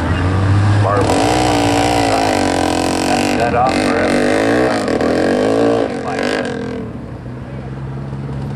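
Small open-wheel dirt-track race-car and ATV engines idling and revving, their pitch wandering slowly up and down over a steady low hum. The revving eases off after about six seconds.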